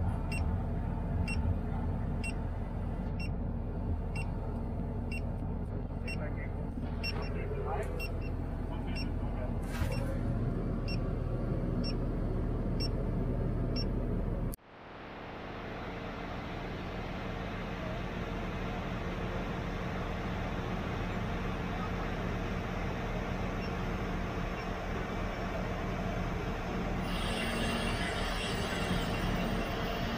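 Mobile crane's diesel engine running steadily, with a short electronic beep repeating about every 0.7 s through the first ten seconds while the automatic counterweight system is working. Partway through, the sound cuts abruptly and the engine is heard running on, with a hiss rising near the end.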